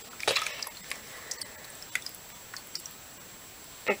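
A few faint drips and small splashes of water, scattered and irregular, as a soaked piece of cardboard tube is moved about in a basin of water.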